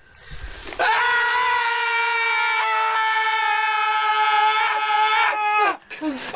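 A long, loud, held scream from a man's voice, one steady high pitch lasting about five seconds. It starts about a second in and cuts off near the end.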